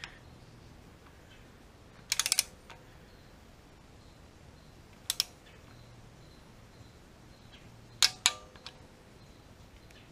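Hand ratchet clicking in short bursts as a small bolt on the oil pickup tube brace is run down snug by hand. There is a quick run of clicks about two seconds in, a couple more around the middle, and two sharper metallic clicks with a brief ring near the end.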